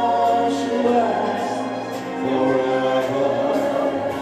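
A man singing a ballad live into a microphone over a backing track, holding a long note in the first second before the accompaniment carries on.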